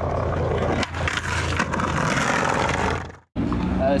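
Skateboard riding on concrete: a steady noise of wheels on the ground, with a short dip about a second in, fading out after about three seconds. A man then starts speaking over steady street noise.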